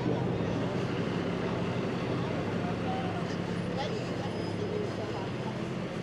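Steady city street traffic noise: a low engine hum over road noise, with no single event standing out.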